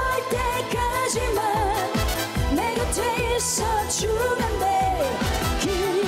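A woman sings a trot song live with vibrato, over a full band backing and a steady dance beat driven by a kick drum.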